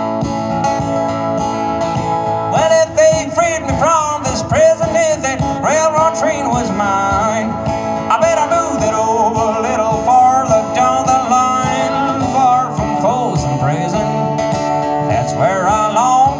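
Acoustic guitar strummed in a country rhythm, an instrumental break between sung verses. From about two and a half seconds in, a lead melody of bent, wavering notes plays over the chords.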